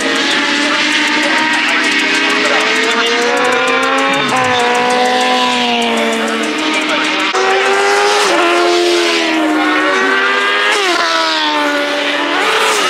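Racing motorcycle engine at high revs on a circuit, climbing in pitch and dropping sharply three times as it shifts up through the gears.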